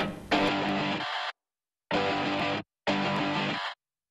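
Television channel ident music led by guitar, chopped into short blocks: a chunk fades out just after the start, then three blocks of under a second each, every one cut off suddenly into dead silence.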